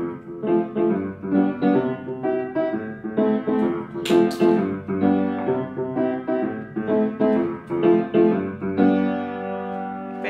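Upright piano played by hand: a simple newly learned tune of steadily repeated notes and chords, easing into longer held notes near the end.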